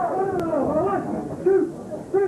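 Several people yelling in drawn-out, wavering calls that overlap, with a louder yell about a second and a half in.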